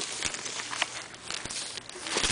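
Rustling and scattered light clicks of a book being handled and its pages flipped open.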